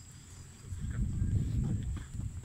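Low, uneven rumbling and thudding on the microphone of a phone carried by a walking person, swelling from about a third of the way in.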